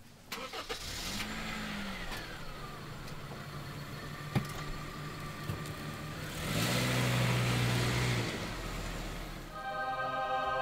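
An engine running, with a brief rise and fall in pitch just after a second in and a louder stretch from about six and a half to eight seconds. A single sharp knock comes about four seconds in.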